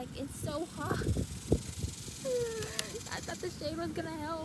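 A woman's voice in short, quiet bits of speech, over a faint hiss, low wind rumble on the microphone and a few rustles and clicks from handling a cloth tote bag.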